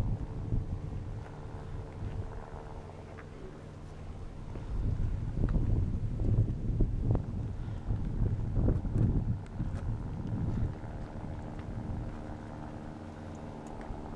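Wind buffeting the microphone in irregular low gusts, strongest from about five to eleven seconds in, over a faint steady hum.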